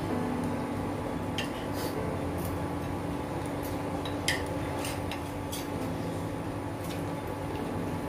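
Eating utensils clinking on a plate: a scattered series of light clicks, with one louder clink about four seconds in, over a steady hum.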